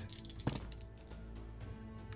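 A handful of six-sided dice thrown into a padded dice tray, a brief clatter of clicks in the first half second, over quiet background music.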